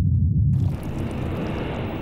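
Documentary sound-effect rumble, deep and steady, that changes about half a second in to a rushing hiss over a continuing low rumble.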